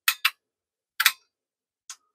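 Four short, sharp clicks at uneven spacing, two close together at the start, one about a second in and a fainter one near the end. They fit the T/R switch's relays pulling in and their contacts settling as the unit is switched from receive to transmit.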